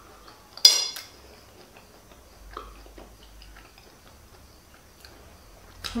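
A metal fork clinks against a plate once, about half a second in, with a brief ringing tone; after that only faint small clicks.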